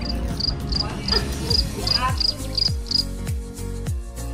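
Cricket chirping: about nine short, high, evenly spaced chirps over the first three seconds. Underneath it, music with deep falling bass notes and a steady beat.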